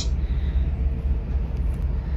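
Wind on the microphone on a ship's open deck: a steady low rumble with a faint hiss above it.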